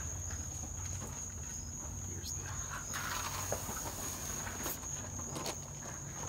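Steady high-pitched chirring of crickets or similar insects, with a few faint footsteps and soft knocks of handling.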